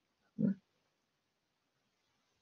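Near silence, broken about half a second in by one short, low vocal sound from the speaker, a brief throat or nasal noise.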